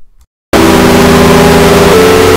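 About half a second in, after a brief silence, an extremely loud, heavily distorted sound effect cuts in: a harsh wall of noise over a steady droning tone, held at full volume.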